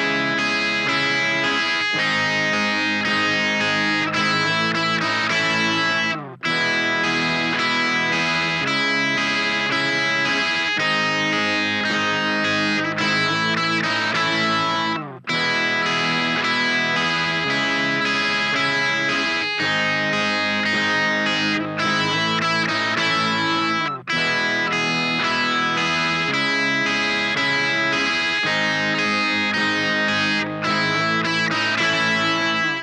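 Gibson Les Paul Standard electric guitar playing a simple alternate-picked lead line on two notes from an E major chord, over a strummed chord backing looped from a looper pedal. The music briefly drops out about six and fifteen seconds in.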